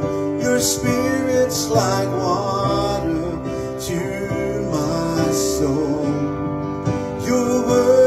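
Soft live worship music from a band, led by a keyboard holding sustained chords.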